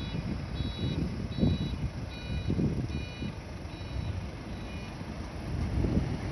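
Reversing alarm on a city bus beeping steadily, a little more than once a second, over the low rumble of the bus's engine. The beeps stop about five seconds in.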